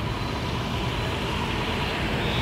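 Steady background noise: an even hiss over a low rumble, with a faint steady high tone running through it.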